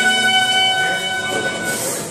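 Live band playing, with a violin holding one long high note over the quieter band; the note fades out near the end under a brief high wash.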